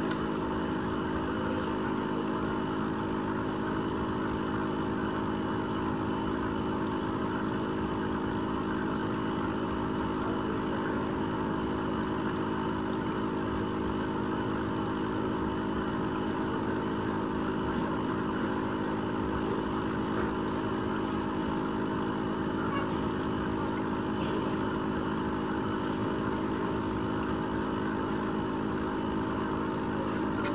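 Aquarium pump running: a steady mechanical hum with a hiss under it. Over it, a fast, high-pitched pulsing trill comes and goes in several stretches.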